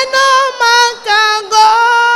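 A woman singing a praise chorus solo into a microphone, in loud, high held notes about half a second each, the melody stepping down in pitch in the second half.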